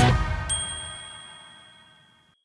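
The last chord of rock-style background music fading out, with a single bright ding about half a second in that rings on and fades away over the next second and a half.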